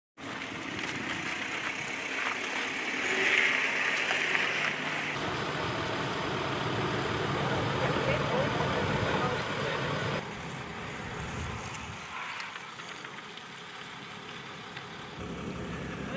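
Outdoor background of vehicle engines running and indistinct voices. The sound shifts abruptly about five and ten seconds in.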